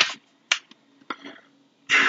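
Paper rustling and a few sharp crisp clicks from book pages being handled and turned: a rustle at the start, two short clicks about half a second and a second in, and another rustle near the end.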